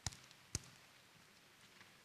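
Two sharp knocks about half a second apart, over faint room tone.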